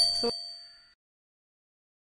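Bell-like 'ding' sound effect of an animated subscribe button, ringing on and fading out within the first second, with a short click about a quarter second in.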